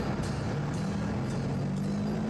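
A vehicle engine running steadily, a low hum whose pitch rises slightly partway through.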